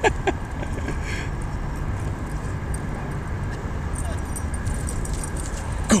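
A steady low rumble of wind and handling noise on the microphone while the camera is carried at a run, with a couple of short yips from a playing dog right at the start.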